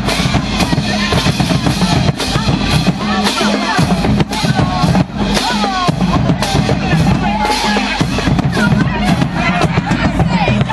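Loud, steady band music with a pounding drum beat and low repeating bass notes, with voices shouting over it.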